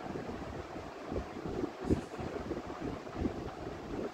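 Uneven low rumble like wind on the microphone, with faint marker strokes on a whiteboard and a single short tap about two seconds in.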